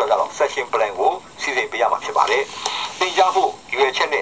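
Speech: a voice reading out a slide lecture, played back through a laptop's small speaker and picked up by the camera.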